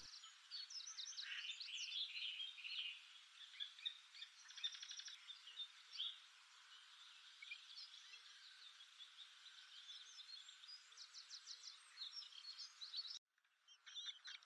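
Faint common blackbird alarm calls: many short chirps and a few quick rattling series, the parents' warning at a potential danger near the nest.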